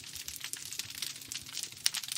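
Underwater recording of a healthy reef: a dense, continuous crackle of countless tiny clicks, like a crackling fireplace.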